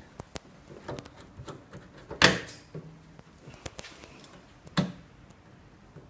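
Handling noises on a small autoclave bubble-remover machine: scattered light clicks and two sharper knocks, the loudest about two seconds in with a brief ring, another a little before five seconds.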